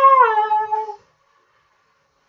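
A man singing one long, high held note without accompaniment, its pitch dipping and then falling slightly before it ends about a second in.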